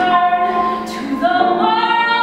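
Music with several voices singing long held notes, shifting to new notes about a second in.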